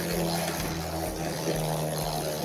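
Two Beyblade Burst spinning tops, Galaxy Zutron and Cho-Z Valkyrie, whirring on the floor of a plastic Decagone stadium just after launch: a steady hum over a hiss.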